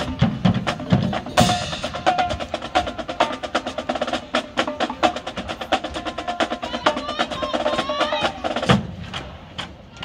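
Marching band drumline playing a fast cadence of crisp snare and drum strikes, a few held pitched notes sounding over it. It cuts off with one hard hit near the end.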